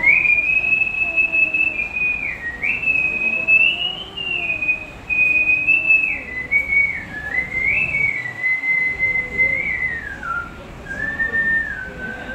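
A man whistling a song melody into a handheld microphone. A single clear whistled tone moves between long held notes, with slides and steps in pitch between them.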